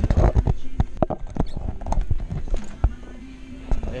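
An irregular run of sharp knocks and rubbing close to the microphone, densest in the first second and again near the end, the handling noise of a phone being carried and moved about.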